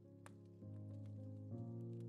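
Soft, slow piano music, muffled as if heard from another room. New chords enter about half a second and a second and a half in, with a faint click near the start.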